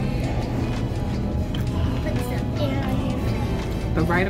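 Restaurant room sound: background music playing under a steady murmur of distant voices and clatter.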